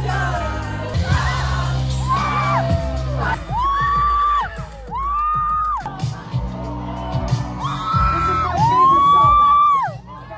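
Live concert music picked up by a phone in the crowd: a singer holding long notes that swell up and fall away, over heavy bass.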